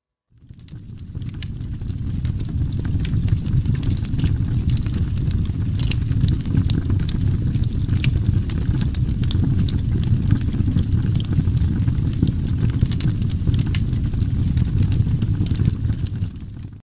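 A steady low rumbling noise with many small sharp crackles over it, fading in about a second in and dipping just at the end.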